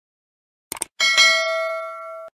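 Subscribe-button sound effect. Two quick clicks, then about a second in a bright notification bell dings, is struck again just after, and rings on, fading slowly.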